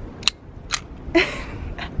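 BB pistol being cocked and handled: two sharp clicks about half a second apart, then a short rustle and a laugh near the end.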